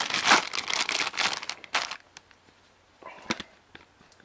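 Clear plastic bag full of jigsaw puzzle pieces crinkling as it is handled, for about two seconds, then a few short faint sounds near the end as it is laid in the box.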